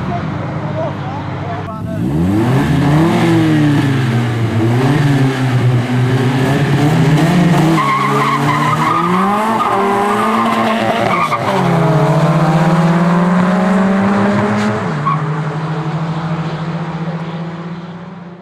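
Car engine accelerating hard from a launch, its pitch climbing and dropping several times as it shifts up through the gears, then holding a steady pitch at speed for the last few seconds.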